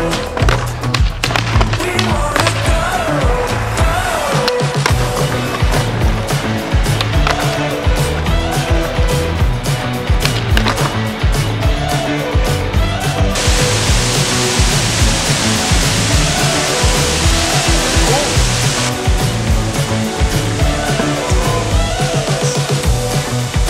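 Background music with a repeating bass line and a sliding melody, laid over skateboard sounds: wheels rolling on concrete and the sharp pops and landings of the board. A loud hiss comes in past the middle and cuts out about five seconds later.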